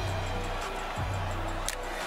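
Hip-hop music with a deep bass line, a new low note starting about a second in.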